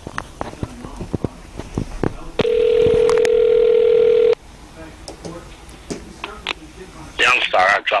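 A telephone beep on the call line: one loud, steady tone lasting about two seconds, starting about two and a half seconds in and cutting off suddenly, after scattered faint clicks.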